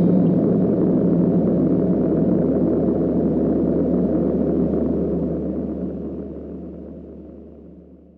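A low, rumbling drone of noise with a steady hum beneath it, closing out a hip-hop track and fading out from about five seconds in.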